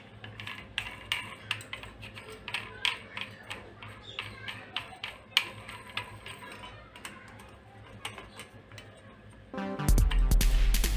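Irregular small clicks and taps of a plastic bulb socket and its brass mounting plate being handled and turned by hand. Loud music starts abruptly just before the end.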